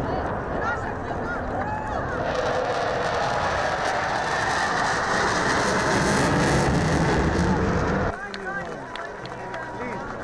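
Fighter jet passing overhead, its engine noise swelling over several seconds and cutting off abruptly near the end, over a crowd's chatter.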